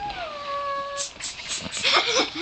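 A baby's long drawn-out vocal coo that rises a little, then falls and fades out about a second in, followed by a few short breathy sounds.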